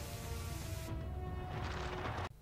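Cartoon soundtrack: held music notes over a heavy low rumble and rushing noise of churning sea water. The hiss of the water thins out about a second in while the music carries on.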